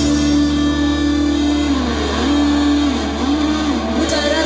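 Live indie rock band playing: an electric guitar holds a sustained note that, from about two seconds in, bends down and back up several times over a steady low bass note.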